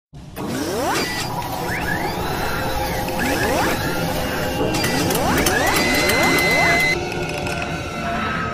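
Sound effects for an animated logo intro: a run of rising mechanical whirs with clicks and ratchet-like rattling, then a steady high whine that cuts off about a second before the end, where the sound drops back.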